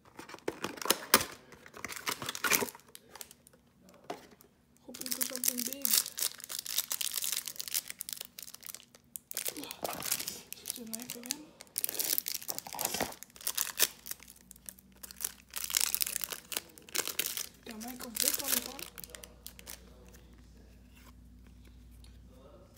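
Clear plastic wrap on a trading-card pack crinkling and tearing in repeated bursts as it is slit with a pocketknife and pulled off.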